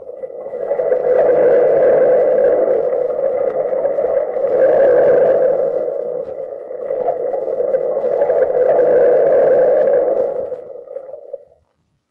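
Radio sound-effect bridge of the sea surging: a rushing wash of noise that swells three times and fades away near the end, with the dull, narrow sound of an old 1940s recording.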